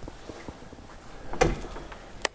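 A door thuds once, loudly and suddenly, about one and a half seconds in, with faint small clicks around it.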